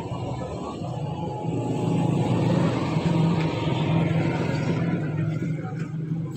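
Steady low rumble of a motor vehicle engine running nearby, growing louder about two seconds in and easing off near the end.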